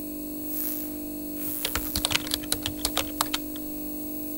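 Computer keyboard typing sound effect: a quick, irregular run of about a dozen key clicks in the middle, over a steady low electrical hum.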